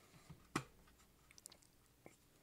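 Faint handling sounds of a phone in a two-piece rugged case being turned over in the hands: a few light ticks and one sharper click about half a second in.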